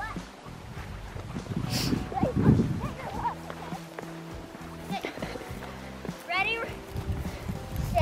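Children's voices calling out at a distance while playing, with a couple of short high calls. Soft music with long held notes runs underneath through the middle.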